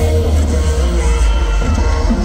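Loud live pop-rock concert music from a band in an arena, with heavy bass.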